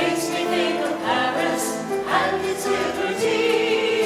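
A small group of men's and women's voices singing together in harmony, holding long notes with vibrato.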